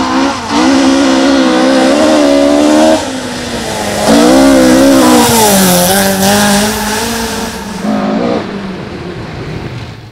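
Ford Escort Mk II rally car engine revving hard: the pitch climbs, drops when the driver lifts or shifts, and climbs again several times. It is loudest about four to six seconds in.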